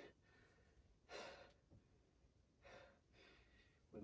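Near silence broken by two sighing breaths about a second and a half apart: a man getting his breath back after a set of push-ups.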